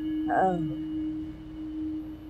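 A steady, single held drone note from the background score, with a brief falling vocal murmur about half a second in.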